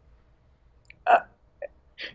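A pause in a man's speech, broken about a second in by one short hesitant "uh".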